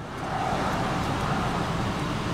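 Steady traffic noise heard through an open car window.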